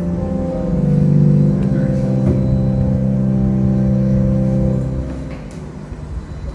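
Software-based digital church organ sounding sampled pipe-organ stops: a low chord changes in the first second, is held steadily, then is released about five seconds in and dies away.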